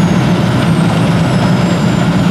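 Škoda Fabia R5 rally car's turbocharged 1.6-litre four-cylinder engine idling steadily on the start ramp.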